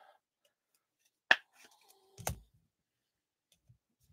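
Trading cards being handled: two sharp clicks about a second apart, the second with a dull thud, as if from cards or plastic card holders being set down or tapped.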